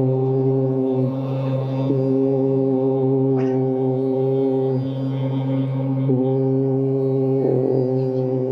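A group chanting a long, held "Om" in unison, the sustained tone breaking for a new breath about a second in and again near five and six seconds in.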